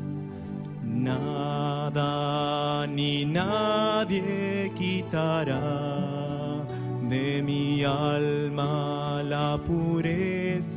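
A man singing a devotional song to classical guitar accompaniment; the guitars play alone at first and the voice comes in about a second in.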